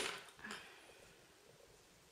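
Faint handling sounds of a tatting shuttle and thread being worked by hand: a soft tap about half a second in, then near quiet.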